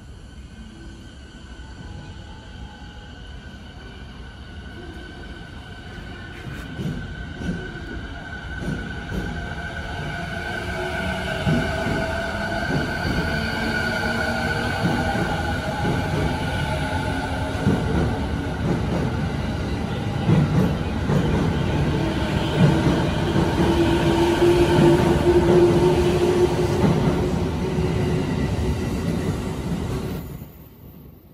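JR East 209-series electric train pulling out and accelerating past, its traction motors' whine rising in pitch and growing steadily louder over the rumble of wheels on rail.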